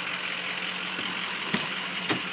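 Ford 6.0 L Power Stroke diesel V8 idling steadily, with a faint tick about a second in and a sharp click about one and a half seconds in.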